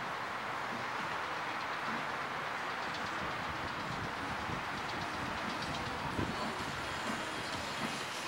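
Steady rushing and rumbling noise on the SlingShot ride capsule's on-board microphone as the capsule sways on its cables and is lowered back toward the ground, with a brief knock about six seconds in.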